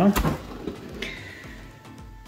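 A single sharp knock of the cardboard laptop box's lid as it is swung open, with the sound dying away after it.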